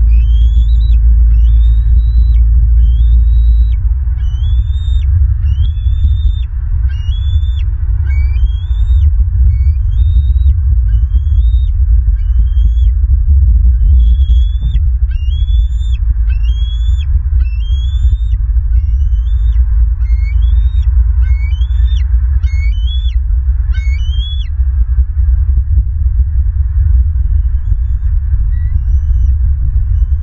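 A bird calls over and over, a short rising whistled note about once a second. It stops about 25 seconds in, with a few faint notes near the end. Under it all is a loud, steady low rumble.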